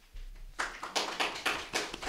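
Applause: a run of quick hand claps starting a fraction of a second in, at the end of a recited poem.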